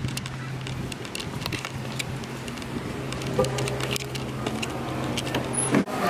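Outdoor street background: a steady low hum under a noisy haze, with scattered light clicks. It cuts off suddenly near the end.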